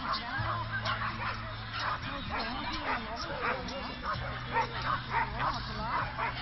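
A dog barking repeatedly, many short barks in quick succession.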